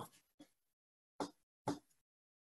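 Mostly silence on a video-call line, broken by two short, faint pops about half a second apart past the middle.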